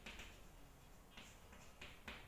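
Chalk writing on a chalkboard: a handful of faint, short taps and scratches of the chalk stick as letters are stroked onto the board.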